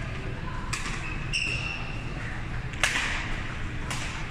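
Badminton rackets hitting a shuttlecock in a doubles rally: three sharp smacks, the loudest about three seconds in, in a reverberant hall. Short high squeaks of court shoes on the floor come in between.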